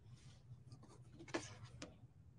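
Faint rubbing and rustling of fingers pressing a felt flower onto a quilted fabric pot holder, with a couple of light clicks, the loudest about halfway through.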